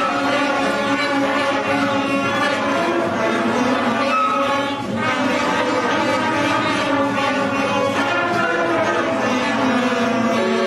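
A school orchestra, strings included, playing a piece badly, with a steady run of sustained notes. The playing is poor enough to be mocked as an ordeal for the parents listening.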